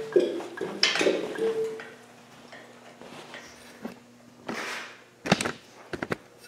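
Workshop handling noises: knocks and scrapes in the first two seconds, then a faint steady hum, a short rustle and a few sharp clicks near the end.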